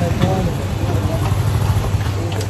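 Motorcycle engine idling steadily with a low, even hum, with faint voices just after the start.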